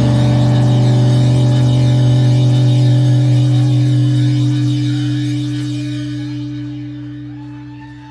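A live band's last chord held and left to ring, a steady low bass-and-keyboard note sounding without any new strikes, slowly fading away over the second half.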